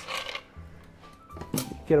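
Soft background music, with a brief rush of the last pour and ice shifting in a metal mixing tin as a stirred cocktail finishes straining into a glass, over in the first half-second. A short click about a second and a half in.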